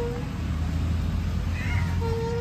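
Playground swing squeaking on its metal chains as it moves: a few short, thin squeals, one sliding up and down near the end, over a low rumble.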